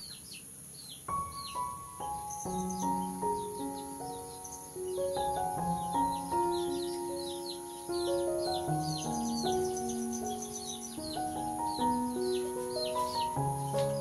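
Soft background music of slow, held notes that comes in about a second in, over a steady run of short, high, repeated chirps.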